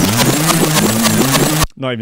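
Drum and bass track playing from a vinyl record on a turntable, with a vocal over the beat, cutting off suddenly about a second and a half in as the record is stopped for a rewind.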